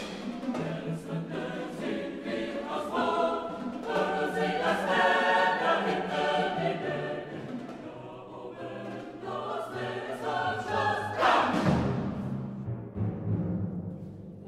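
A chorus singing with orchestra in a modern classical choral work. About eleven seconds in, a loud percussion crash rings away under the voices.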